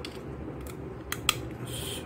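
About four light, sharp clicks and then a short scraping rustle near the end, as a CR2032 coin-cell battery is handled and fitted into the plastic battery compartment of a small digital luggage scale.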